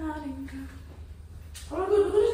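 A woman's wordless singing: held notes that step down in pitch and fade out about a second in, then another held note starts near the end.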